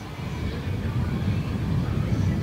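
Dassault Falcon 50 business jet's three turbofan engines, a low rumble growing louder.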